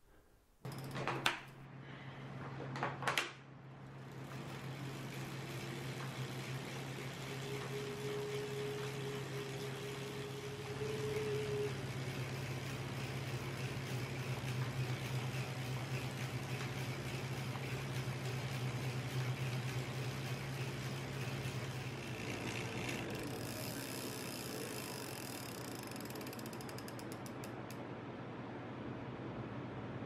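Road bike being pedalled on a Tacx Neo direct-drive smart trainer: chain and drivetrain running steadily over the trainer's hum. Two sharp clicks come in the first few seconds.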